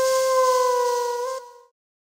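Final held note of a Romanian party song on an electronic keyboard: one steady tone that bends slightly downward about a second in, then stops about a second and a half in.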